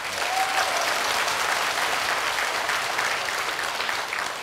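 Audience applause, many hands clapping steadily, easing off slightly near the end.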